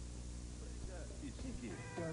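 Low hum and hiss of an old videotape recording, then about halfway in a voice comes in with wavering, falling glides, the opening of a song.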